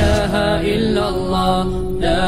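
Melodic vocal chanting in Arabic, a religious nasheed-style chant with long held, gliding notes.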